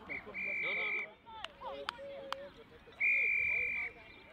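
A referee's whistle blown twice: a steady, shrill blast of under a second just after the start, then a second one of about the same length near the end, signalling a stop in play and then the restart.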